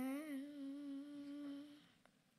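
A girl's singing voice holding the long final note of a sung line. The note wavers slightly in pitch, gradually fades, and stops just before the end.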